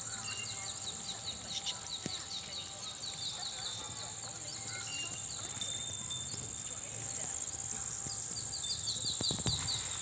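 Steady high-pitched insect chirring, with a repeated series of short, quick high calls running through it for the first few seconds and again near the end. A few soft low knocks come near the end.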